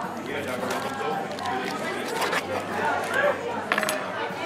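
Indistinct chatter of many diners, with a few sharp clicks near the end.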